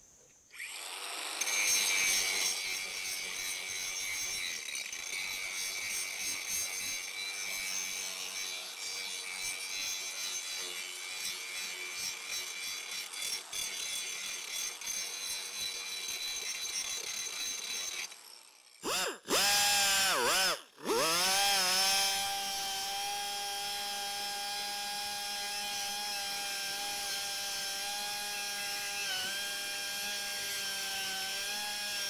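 Angle grinder grinding corrosion out of the cast aluminum core plug boss on a Sea-Doo 717 tuned pipe, a steady high whine that stops about 18 seconds in. A second later a small die grinder spins up, cuts out briefly, spins up again and runs at a steady pitch with its burr in the plug hole.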